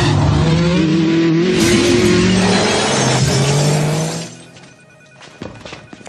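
A car pulling away hard, its engine revving with a slowly rising pitch over loud tyre squeal. The sound drops away sharply about four seconds in.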